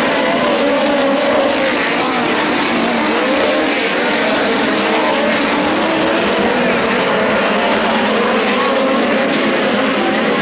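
A pack of USAC midget race cars lapping a dirt oval, several engines running at once, their pitches wavering up and down as the cars circulate.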